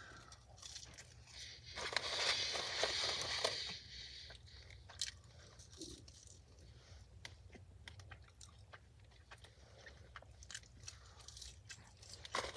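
A person chewing French fries close to the microphone, the chewing loudest for about a second and a half starting two seconds in, then quieter with small mouth clicks.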